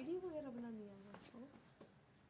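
A long, wordless vocal call that rises and then slowly falls in pitch, followed by a short rising second call.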